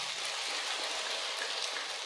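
Audience applauding: dense, even clapping from a large crowd.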